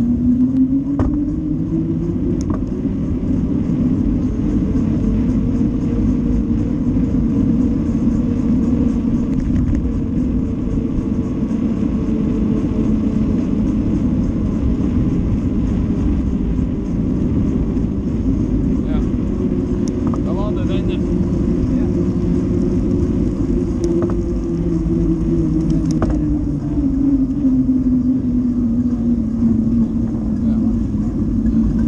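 Engine of a small motor vehicle being ridden, its note rising as it pulls away, holding steady while cruising, then falling as it slows near the end. Heavy wind and road rumble on the microphone underneath.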